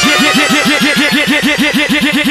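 Electronic dubstep music built on a rapid repeating pitched synth stab, about six strokes a second, each one a short rise and fall in pitch, with a machine-like, engine-cranking character.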